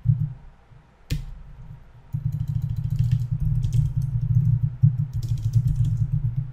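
Computer keyboard typing, with a sharp click about a second in and a run of light key clicks through the second half, over a loud, fluttering low rumble.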